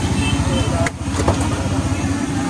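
An engine running close by, a low, fast, steady throb that dips briefly about a second in.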